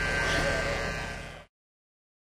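A fading wash of noise with a faint voice in it, dying away steadily until the sound cuts off to silence about one and a half seconds in.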